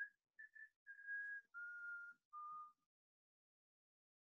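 A man whistling a short tune faintly: a few quick notes, then three longer held notes, each one lower than the last.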